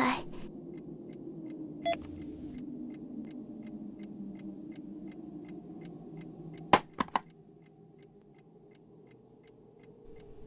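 A clock ticking quickly and evenly over a low hum. About two seconds in there is a short beep, and about seven seconds in a few sharp clicks, after which the hum drops away.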